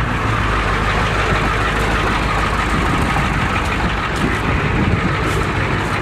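Ford truck engine running steadily, just brought back to life after water was cleared from its fuel.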